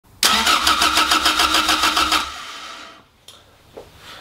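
Toyota MR2 Mk1's 4A-GE 1.6-litre twin-cam four-cylinder cranking on the starter motor at an even pulse of about eight to nine a second for about two seconds without catching, then winding down. It turns but won't fire: the engine has spark but no fuel.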